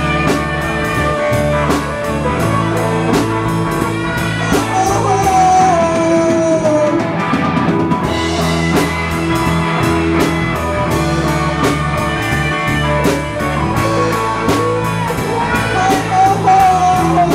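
Live rock band playing: electric guitar, bass and drum kit keep a steady beat under a lead melody that bends up and down. The cymbals drop out briefly just past the middle, then come back in.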